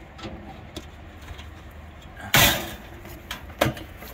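The exterior access door of a Scamp camper's water heater compartment being unlatched and opened: a few light clicks, then one loud clack a little past halfway.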